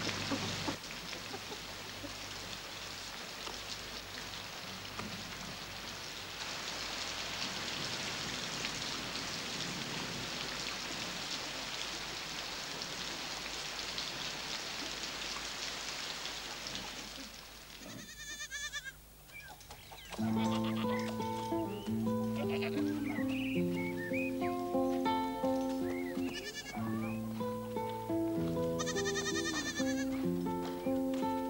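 Steady rain for the first seventeen seconds or so. After a brief lull, music of slow, sustained chords begins, and a few short wavering high calls sound over it.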